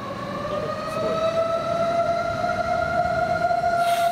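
Fire engine siren wailing: one long tone that rises slowly over the first couple of seconds and then holds steady.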